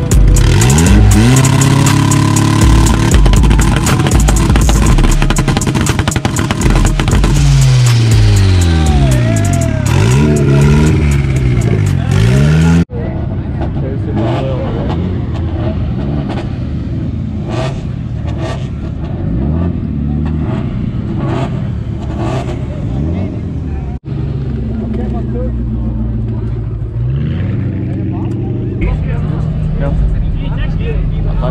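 Car engines revving hard, the pitch rising and falling with each rev, over the first dozen seconds. After a sudden cut the engine sound is quieter and steadier, and another rev rises and falls near the end.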